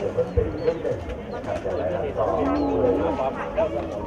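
Voices of several people talking over one another in a room, with one low voice drawn out and rising and falling in the second half.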